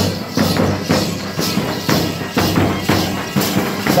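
Percussion music for the Gond Gussadi dance: drums beating a steady rhythm of about two strokes a second, with jingling bells over it.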